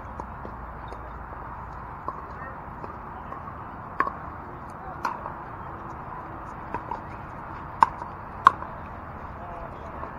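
A pickleball rally: paddles striking the hollow plastic ball with sharp pocks, about seven hits at uneven spacing, the two loudest near the end. A steady hiss of background noise runs underneath.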